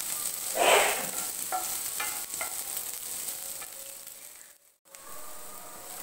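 Sliced onions sizzling in a nonstick frying pan as they are stirred with a wooden spatula, with a louder burst of sizzle and scraping about a second in and a few light knocks of the spatula. The sound cuts out briefly near the end.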